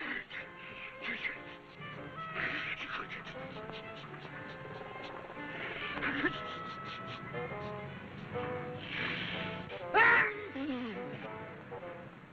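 A man's drawn-out, wavering pre-sneeze gasps building to a loud comic sneeze about ten seconds in, over film music.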